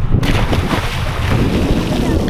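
A man belly-flopping into lake water: a sudden splash just after the start, then about two seconds of spraying, churning water. Wind buffets the microphone throughout.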